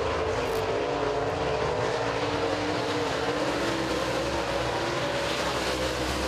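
Dirt super late model race cars' V8 engines running flat out around the track. Several engines blend into one steady drone whose pitch rises and falls gently as the cars circle.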